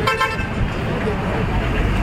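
Street traffic noise with a short vehicle horn toot near the start, and a deeper vehicle rumble building near the end.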